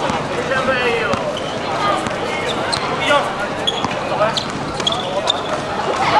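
A basketball bouncing on a hard court in a few irregular thuds, amid players' and spectators' voices and shouts.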